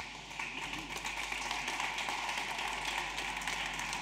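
Steady room noise of a presentation hall, with faint scattered taps.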